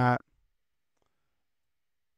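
The last spoken word ends just after the start, then near silence: room tone with one very faint click about a second in.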